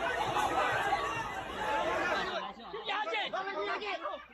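A crowd of people talking over each other. A little over two seconds in, the sound cuts abruptly to a few separate, clearer voices.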